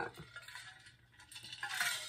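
A person drinking from an insulated metal water bottle: a quiet lull, then a soft rushing sip and gulp near the end, with faint small clinks.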